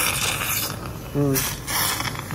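Cardiopulmonary bypass pump sucker (surgical suction) drawing blood and air from the open chest: a hiss in two stretches, the first ending about two-thirds of a second in, the second starting about a second and a half in.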